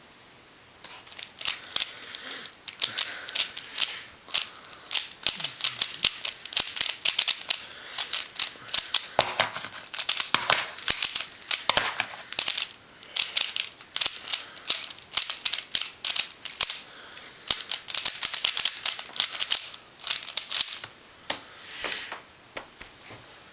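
A QiYi Thunderclap v1 3x3 speed cube being turned one-handed at speed: rapid bursts of plastic clicking turns with short pauses between them, for about twenty seconds.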